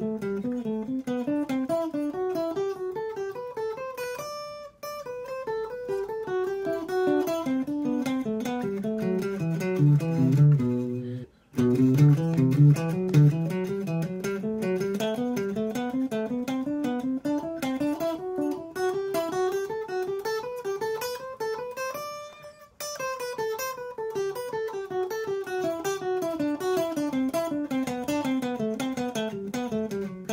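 Clean electric guitar playing a G major scale pattern in thirds with single alternate-picked notes, climbing up one position and back down. The pattern runs twice, with a short break about eleven seconds in.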